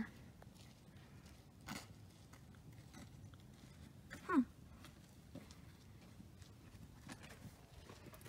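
Quiet background with a few faint, scattered clicks and rustles. A person murmurs a short "hmm" about four seconds in.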